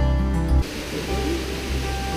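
Acoustic guitar background music cuts down sharply about half a second in. A steady rush of falling water from a waterfall takes over, with the music going on faintly beneath it.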